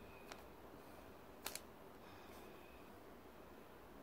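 Near silence: quiet room tone, with one faint click about a third of a second in and a short double click about a second and a half in.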